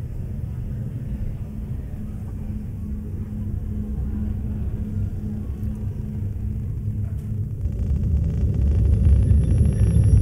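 Electronic soundtrack of a robot performance: a low rumbling drone with a steady hum, slowly growing louder. About three-quarters of the way in the sound shifts, the rumble thickens and high steady tones come in.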